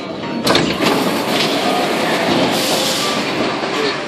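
Metro car standing at a station platform with its doors open. A sudden clack comes about half a second in, followed by steady noise, with a louder hiss near the middle.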